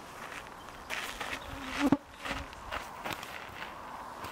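A flying insect buzzing close past the microphone: a hum that swells to a sharp peak about two seconds in, then fades.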